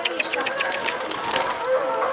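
Domestic pigeon's wings flapping in a rapid, irregular clatter of clicks, with faint voices behind.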